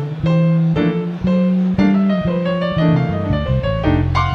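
Electric keyboard playing a jazz solo over a plucked electric bass line; the saxophone is silent.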